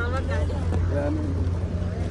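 A person's voice repeating a phrase in fragments, with a steady low hum beneath it.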